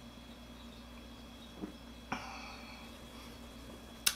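Quiet room with a low hum. About a second and a half in, a man sipping beer from a glass makes a faint click, then a slightly louder click with a short breathy exhale as the sip ends.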